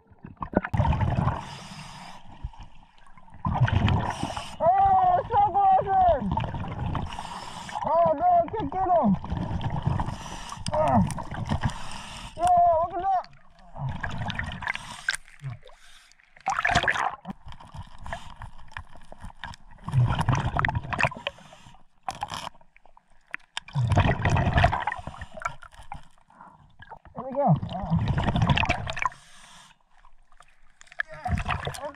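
Scuba regulator breathing underwater: a rush of exhaled bubbles every three to four seconds, with a few pitched, warbling sounds in the first half.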